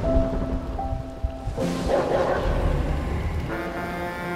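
Soft, sustained film-score notes over heavy rain, with a rumble of thunder swelling about one and a half seconds in.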